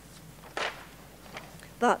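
Paper poster being picked up and handled: one short rustle about half a second in and a couple of faint ticks, then a word begins near the end.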